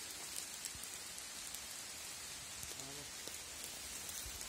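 Faint, steady outdoor hiss with small scattered pattering ticks, like light dripping on forest leaves; a voice speaks briefly about three seconds in.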